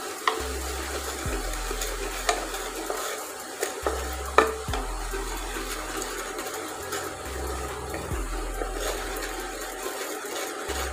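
A wooden spatula stirs and scrapes around a non-stick pot as flour fries in hot fat. A steady sizzle runs under irregular scrapes and knocks, and the sharpest knock comes about four and a half seconds in.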